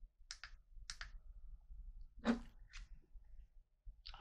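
Small plastic clicks of buttons being pressed on recording devices as they are stopped, about six clicks, mostly in quick pairs, in the first three seconds.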